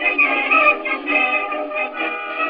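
Band music from an early acoustic-era recording, thin and boxy, with no deep bass and no high treble.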